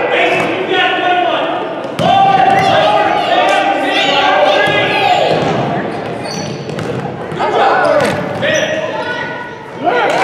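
Spectators' voices shouting in an echoing gym during a youth basketball game, including a long held yell a couple of seconds in and another starting near the end. Under the voices are a bouncing basketball and short sneaker squeaks on the hardwood floor.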